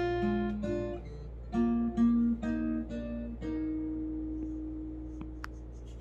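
Acoustic guitar playing a closing phrase of picked notes and chords, then a last note left ringing and slowly fading from a little past halfway.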